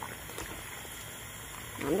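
Soup simmering in a stainless steel pot on the stove, a steady low bubbling.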